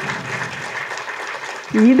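Audience applauding, a steady patter of hand claps.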